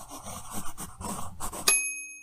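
Intro sound effect for an animated title: a soft, grainy patter with small clicks, then a single bright chime about 1.7 s in that rings on and fades.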